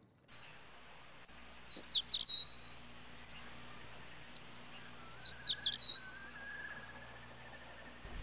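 Birdsong: a small songbird sings two short bouts of high chirps and quick downward-sweeping notes, a few seconds apart, over a faint steady hiss.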